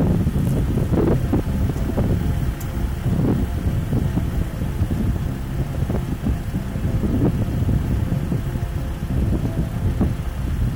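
Wind buffeting the microphone, a heavy, unsteady low rumble.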